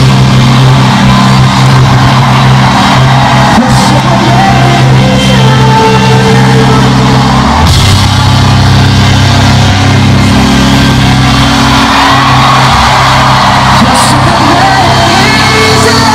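Live band music in an arena, heard loud from far back in the audience, with a heavy, steady bass line that changes about halfway through and voices singing and shouting over it.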